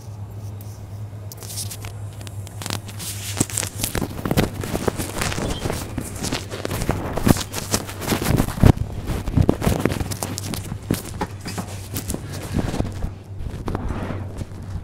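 ATR 72-600 turboprop engine starting, heard from inside the cabin. Under a steady low hum, a rushing, crackling noise sets in about a second and a half in and grows louder.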